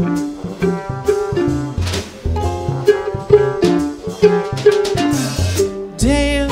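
Live acoustic jazz band playing an instrumental passage: a trombone carries a melody of short, separate notes over drum kit and bass.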